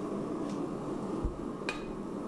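Steady rushing of a running forge, with a single light metallic clink near the end as the glowing steel billet held in tongs is set down on the anvil.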